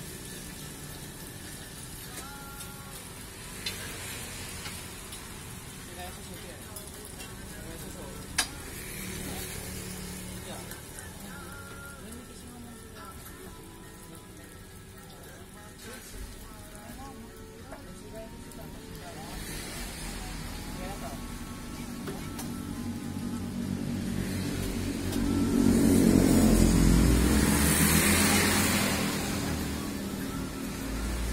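Martabak telor frying in a wide pan of hot oil, with steady sizzling and two sharp clicks of the metal spatula against the pan. Near the end, a louder swell of noise builds and fades over a few seconds.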